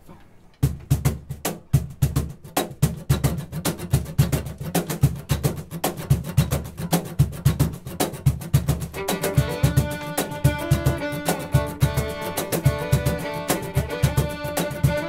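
An acoustic string band starts a tune about half a second in with a quick, even percussive rhythm and plucked upright bass. A bowed fiddle melody comes in about nine seconds in.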